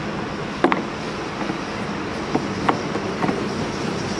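A few sharp clicks from the plastic fuel cap and filler of a Suzuki Let's 5 scooter being handled, the loudest a little under a second in, over a steady low hum.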